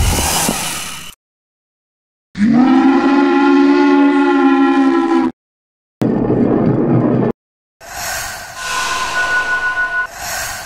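Cartoon sound effects: a noisy crash fading out, then after a gap a loud, steady horn-like blast held for about three seconds that cuts off abruptly, followed by a short hissing burst and a rougher stretch of noise with a thin high tone near the end.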